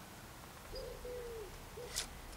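A dove cooing in the background, three low coos with the middle one longest, followed by a sharp click at the end.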